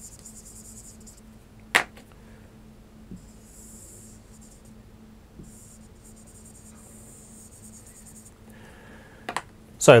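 Marker pen drawing on a whiteboard: several stretches of scratchy hiss as strokes are drawn, with a sharp tap about two seconds in.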